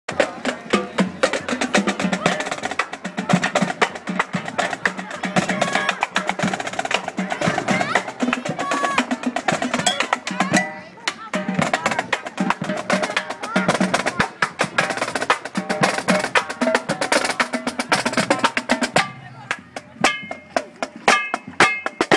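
Marching band drumline playing a cadence on snare and bass drums, a dense rolling beat. About halfway through it dips briefly. Near the end the playing thins to sharper, separate strikes.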